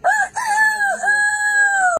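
A man's voice imitating a rooster crowing: a short high note, a brief break, then one long, high, drawn-out call with small dips in pitch.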